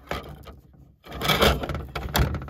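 A roll of paper thermal labels being handled, giving a short rub near the start and then a loud, rough rubbing and scraping of paper from about a second in.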